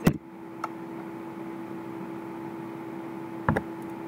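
A few clicks of computer input over a steady hiss and hum: one sharp click right at the start, a faint one under a second in, and two close together near the end.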